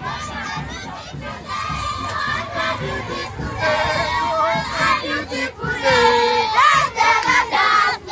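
A crowd of children shouting and cheering together, many voices overlapping, growing louder about halfway through.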